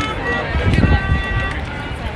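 Indistinct voices of people talking nearby, over an irregular low rumble on the microphone.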